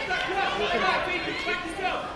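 Crowd chatter in a large hall: several voices talking at once and overlapping.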